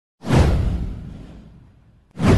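A whoosh sound effect with a deep boom under it. It hits suddenly a moment in and fades away over about a second and a half.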